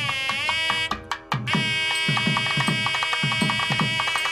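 Nadaswaram and thavil temple music: a reed pipe plays bending, then long-held high notes over a steady drum beat of about three strokes a second, dipping briefly a second in.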